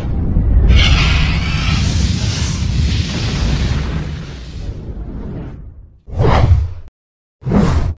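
Whoosh sound effects with a deep rumble for an animated logo outro. A long whoosh swells early and fades out over about five seconds. Then come two short, separate whooshes about a second apart near the end.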